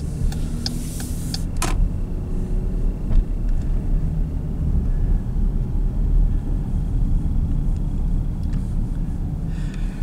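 Steady low rumble of a car driving slowly, heard from inside the cabin. A few faint, evenly spaced ticks and one sharper click come in the first two seconds.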